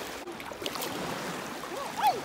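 Shallow lake water sloshing around legs wading through it, with a steady wash and a few small splashes about two thirds of a second in.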